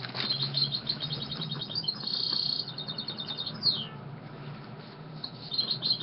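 Birds chirping and trilling in quick runs of short high calls, with one falling whistle about three and a half seconds in.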